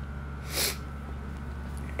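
A woman sneezes once, a short burst about half a second in, a sign of her sinuses acting up.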